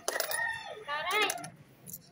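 High-pitched vocalising in short bending cries, with sharp clinking clicks near the start and again about a second in.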